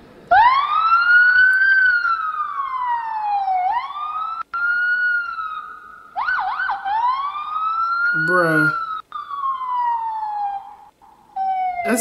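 A boy imitating a police siren with his voice: a long wail that rises and falls slowly in pitch over several sweeps, with a quick warble about six seconds in.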